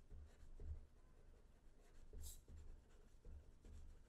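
Faint scratching of a pen writing by hand on paper, in short intermittent strokes.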